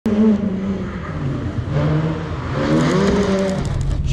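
Car engine revving as it is driven hard through a cone course, its pitch rising and wavering about two and a half seconds in before it drops away.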